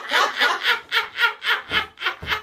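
A person laughing in a run of short breathy bursts, about four a second.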